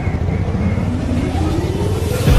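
Motorcycle engine running in street traffic, a steady low rumble with the engine note rising near the end.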